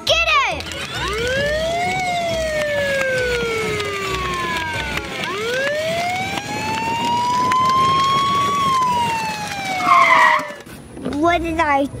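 A police-style siren wailing, its pitch sweeping slowly up and down twice.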